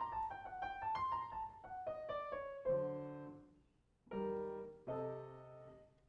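Classical violin and grand piano duet: a falling melodic phrase over the first couple of seconds, then the piano alone plays three sustained chords, each followed by a short silence.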